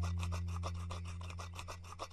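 Wire whisk beating rapidly in a bowl, a cartoon sound effect: a fast, even run of scratchy strokes, over a low held tone that fades away.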